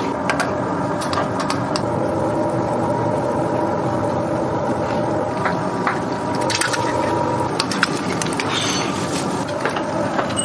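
Eggs frying in hot oil in a four-cup egg pan, with scattered crackles and pops from the oil, over a steady low kitchen drone.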